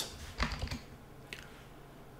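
A few keystrokes on a computer keyboard as a word is retyped: a short run of clicks about half a second in and another just past a second.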